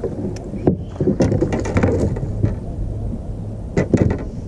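Irregular knocks and clatter of gear and the angler moving about a small fishing boat while a hooked bass is brought to the boat, with two sharper knocks near the end, over a steady low hum.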